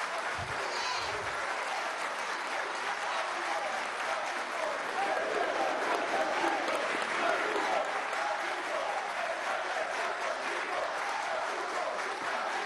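A large crowd applauding steadily, with crowd voices mixed in under the clapping.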